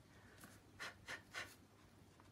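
Three faint, short scratchy rustles in quick succession, about a third of a second apart: handling noise of plastic painting tools in a gloved hand.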